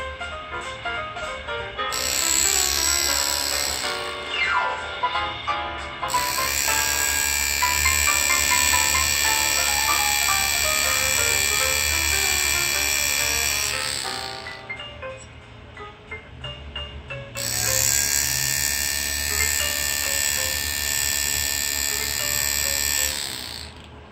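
A powered engraving handpiece driving a fine flat graver through aluminium plate, buzzing in three runs that start and stop abruptly, the longest about eight seconds. Jazz music plays underneath.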